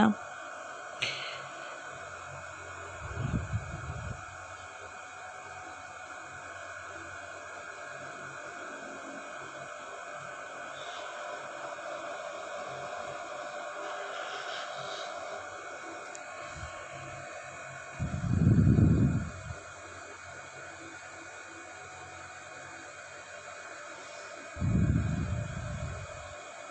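Paratha frying in oil on a hot iron tawa, giving a steady low sizzle. Three brief low rumbles of handling noise break in, about three seconds in, around eighteen seconds and near the end.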